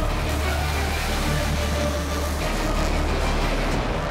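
Two 11,000-horsepower nitro Funny Car engines, supercharged nitromethane-fuelled Hemi V8s, running at full throttle side by side down a drag strip: a steady, dense roar with a deep rumble underneath that drops away near the end as the cars reach the finish line.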